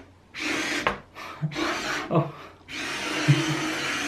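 ROBOTIS OLLOBOT toy robot's small electric drive motors whirring as it drives and turns under phone remote control. The whirring comes in three runs of about a second each, with short stops between, and the last run is the longest.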